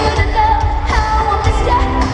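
Live pop music from the arena PA, a female singer's voice gliding over a heavy, pounding bass beat, recorded on a phone's microphone from within the crowd.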